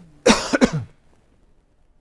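A man coughing twice in quick succession, starting about a quarter second in and over within a second.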